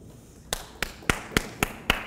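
Hands clapping in a steady rhythm, sharp single claps about four a second, starting about half a second in.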